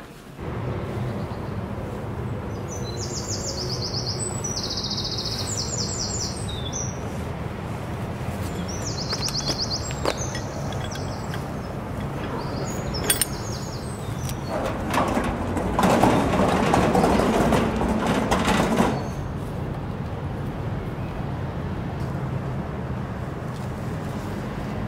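Small songbirds chirping in quick, rapidly pulsed trills over a steady low hum. A louder rushing noise swells for a few seconds about two-thirds of the way through.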